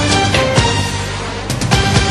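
Programme's closing theme music, with sharp percussive hits through it and two close accented hits near the end.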